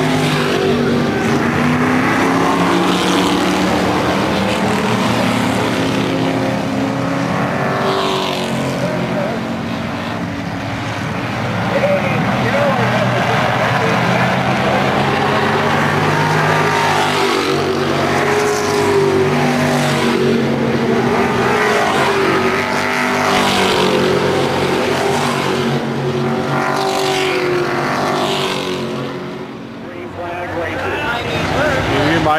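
Sportsman-class stock cars racing, their engines running hard as the field passes close by again and again, about every four to five seconds, each pass rising and falling in pitch.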